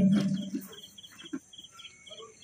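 A boy's voice through the microphone fades out in the first half-second. Then faint cricket chirping follows: short high chirps, about three or four a second.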